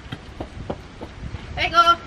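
Footsteps on a paved path, about three a second, then near the end a short, loud, steady pitched tone lasting about a third of a second.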